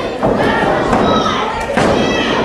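Wrestlers' bodies hitting the ring mat: two thuds, about a second and a half apart, over spectators shouting.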